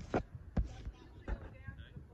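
Fireworks going off at a distance: three sharp bangs in the first second and a half, spaced unevenly.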